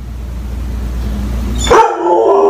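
Dog left alone at home howling. A low steady rumble gives way, near the end, to a sudden loud howl that starts high and drops in pitch.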